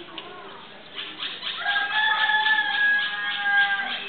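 A rooster crowing loudly, starting about a second in with a rough opening and ending in a long held note of about two seconds that cuts off near the end.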